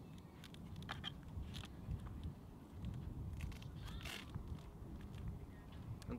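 Faint crackling and small clicks of a rigid carbon-fibre shooting belt being pressed onto its velcro inner belt and fastened at the back, with one louder crackle about four seconds in, over a low rumble.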